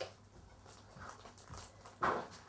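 Quiet room tone with a low hum and a few faint, soft noises, about a second and a second and a half in.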